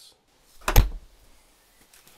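A single short thump about three-quarters of a second in.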